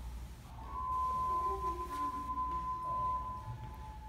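A single steady, high, pure tone, held like one long note from about half a second in for nearly three seconds, then carrying on more faintly, over low room rumble.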